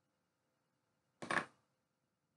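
A short clatter, a hard object knocking on a hard surface with two or three quick hits, a little over a second in.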